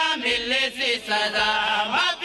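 A man chanting devotional verse in a melodic style into a microphone, ending on one long held note.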